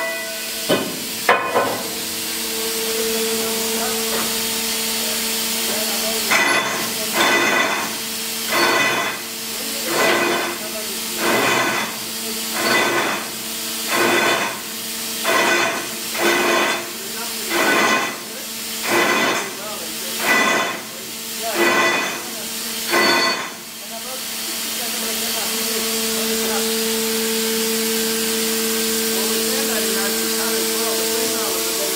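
Underground hydraulic drill rig running with a steady hiss and hum. For a stretch in the middle it pulses regularly, about once every one and a half seconds, and then settles back to the steady hiss.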